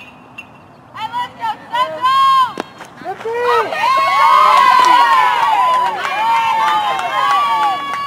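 A softball bat strikes the ball with a short sharp ping, putting it in play. About a second later many high-pitched voices break into overlapping yells and cheers, loudest around the middle.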